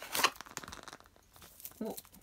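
Small cardboard chocolate-egg box torn open and the foil-wrapped egg handled: a short cluster of tearing and crinkling about a quarter second in, then fainter rustling.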